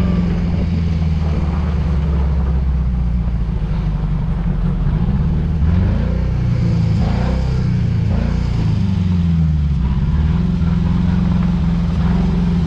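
Ford Ka's four-cylinder engine running in a stripped buggy body, rising and falling in pitch a few times in the middle as the throttle is worked. The engine still has the weakness and misfire the owner is chasing: a new fuel pump has not cured it, and he plans to look at the ignition coil next.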